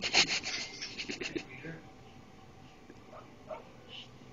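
Scratchy rustling and breathy little sounds close to the microphone for about the first second and a half. After that it goes quieter, with a couple of faint short baby vocal sounds around three seconds in.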